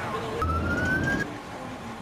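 Police car siren giving one short rising tone, under a second long, about half a second in, with a low rumble beneath it.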